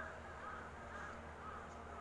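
Faint bird calls, a series of short arched notes about every half second, over a low steady hum.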